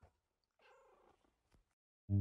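Near silence, with only a very faint brief sound under a second in, and dead silence just before the end.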